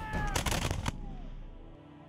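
A rapid burst of gunfire, many shots close together for under a second, with a few falling whines among them, cut off suddenly. Quiet, sombre music follows.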